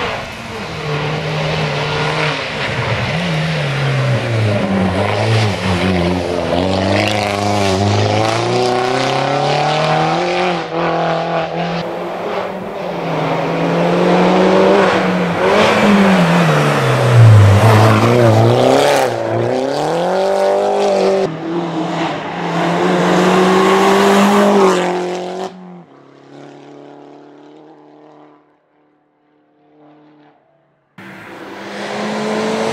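Mini Cooper JCW race car's engine revving hard on a hillclimb, its pitch climbing and falling again and again as it shifts gears and lifts for the bends, loudest as it passes close. About 25 seconds in the sound cuts off suddenly, leaving only a faint engine tone that fades out.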